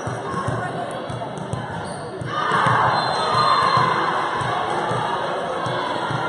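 Volleyball rally in a gymnasium: ball contacts and thuds on the hardwood, then about two seconds in, crowd and players break into cheering and shouting as the point ends.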